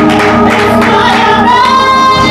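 Live gospel worship music: a woman singing lead with backing singers, holding one long high note from about one and a half seconds in.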